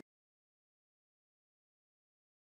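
Near silence: digital silence with no sound at all.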